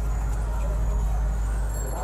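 Engine of a CNG auto-rickshaw running close by, a steady low rumble with a pulsing beat, with street voices underneath.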